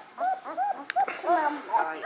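Very young puppies crying in a string of short, high whimpers, about four a second, with a sharp click about halfway through. They were taken from their mother while feeding and may be upset about it.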